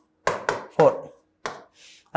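Marker pen tapping and stroking on a whiteboard as numbers are written: three quick taps in the first second, another about halfway through, then a faint scrape near the end.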